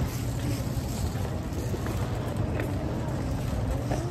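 Shopping cart rolling across a store floor: a steady low rumble from its wheels.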